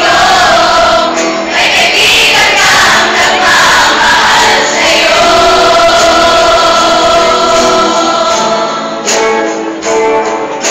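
A choir singing, with a long held note through the second half that breaks off near the end.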